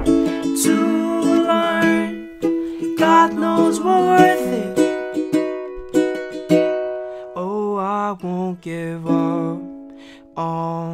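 Baritone ukulele strung with ukulele strings and tuned GCEA, strummed slowly in a ballad rhythm, with a man's wordless singing sliding over the chords. A knock at the door comes right at the start.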